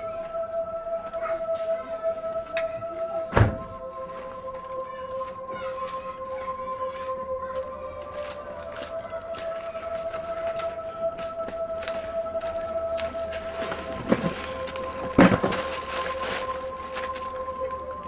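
Background film music of long, held synthesizer notes, with three sharp thumps: one about three seconds in and two close together near the end.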